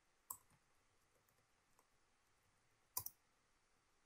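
Near silence with a few faint computer keyboard and mouse clicks: a single click about a third of a second in, and a sharper double click about three seconds in.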